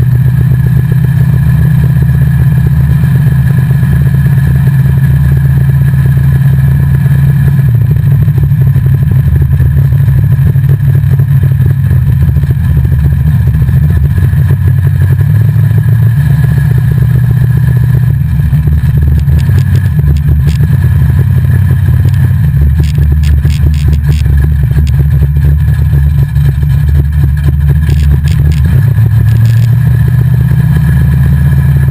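Drag car's engine running steadily under light load while being driven, heard loud inside the stripped cabin as a constant low drone. Scattered sharp clicks join in during the second half.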